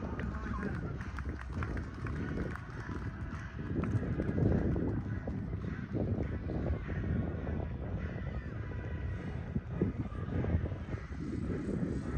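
Wind buffeting the microphone in irregular low gusts, with faint voices in the background.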